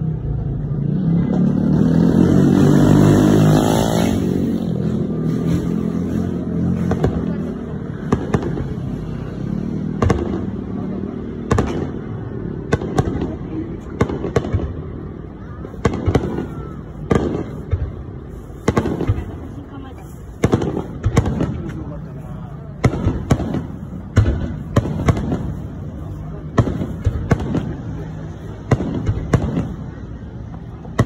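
Aerial fireworks shells bursting over a crowd: a long, irregular series of sharp bangs from about eight seconds in, often one to two a second. The first few seconds are dominated by a louder voice-like sound before the bursts take over.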